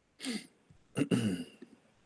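A man clearing his throat in two short bursts, the second about a second in and a little longer.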